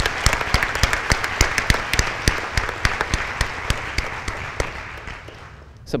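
Audience applauding, a dense run of clapping that thins out and fades over the last second or so.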